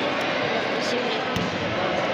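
Crowd chatter from many people in a large hall, steady and unbroken, with a single dull thud about a second and a half in.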